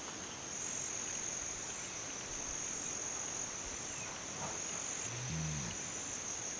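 Steady high-pitched insect chorus running throughout. A short low call comes in near the end.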